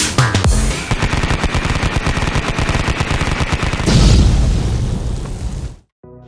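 Electronic intro music with a fast rattle of sharp hits like machine-gun fire for about three seconds, then a deep boom about four seconds in that fades out and cuts off just before the end.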